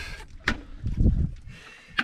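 A bucket of speared lionfish being emptied into a plastic cooler: a sharp knock about half a second in, then a dull low thud as the fish land.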